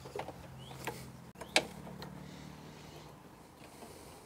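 Quiet clicks and taps of hands and a tool working the metal battery hold-down clamp on a car battery, with one sharper click about one and a half seconds in.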